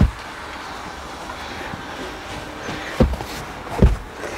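Cushioned bed panels of a campervan's bench bed being lifted off their wooden slat base and set down: a dull knock at the start and two more close together near the end, over a steady low background noise.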